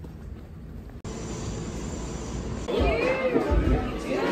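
Low outdoor background rumble for about a second, then an abrupt change to an indoor room's steady hum and murmur, with a voice rising and falling in pitch from near three seconds in.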